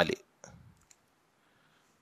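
A few faint clicks and a short soft tap from a felt-tip marker pen on paper as dots are put on a drawing.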